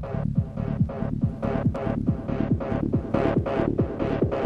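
Electronic trance track at 142 beats per minute: a steady kick drum on every beat, each hit dropping in pitch, under a busy bass line and synth layers.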